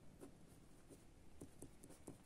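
A felt-tip marker writing on paper: faint, irregular short scratches and light taps of the pen strokes.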